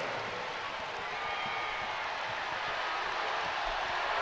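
Arena crowd noise: a steady wash of cheering and chatter from the basketball crowd after a home basket.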